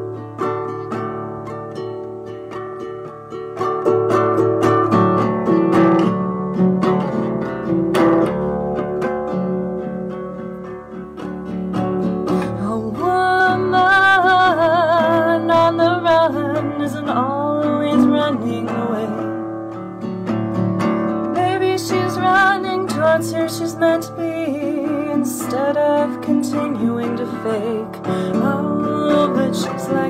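Acoustic guitar strummed through a wordless stretch of a folk song. A melody with vibrato wavers over the strumming around the middle and again later.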